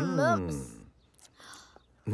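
A young child's cartoon voice giving a wavering, unhappy moan that fades out within the first second, followed by soft breathy sounds. It is Bing's dismayed reaction to his mixed-up lunch.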